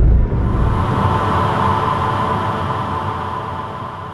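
Synthesized logo-sting sound effect: a deep boom hits at the start, then a noisy electronic drone hangs on and slowly fades.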